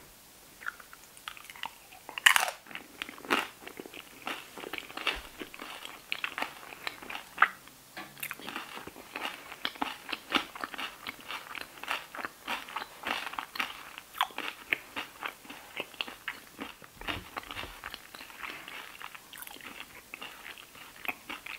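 A loud crunching bite into a loaded tortilla chip about two seconds in, followed by steady, crunchy chewing of nachos.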